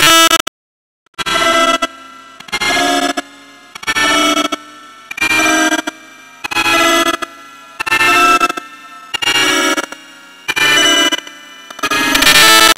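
Short bursts of pitched, processed sound, repeating about every 1.3 seconds with a faint steady hum in the gaps between them.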